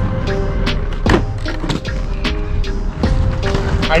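Background music over the rolling of aggressive inline skate wheels on asphalt as the skater grinds a low rail, with a few sharp knocks.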